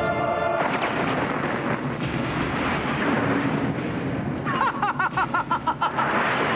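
Film trailer soundtrack: dramatic music under explosion-like rumbling effects, with a rapid pulsing, warbling sound effect coming in near the end.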